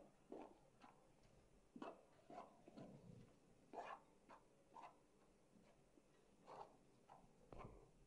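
Faint, irregular scrapes and taps of a spoon stirring damp, crumbly flour dough in an aluminium bowl.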